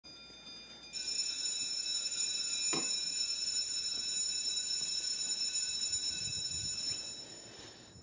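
Electric school bell ringing without a break. It starts suddenly about a second in when a wall push-button is pressed, holds steady for about six seconds, then dies away near the end.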